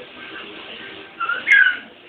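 A baby's short, high-pitched squeals: two quick cries a little past a second in, the second louder and sliding in pitch.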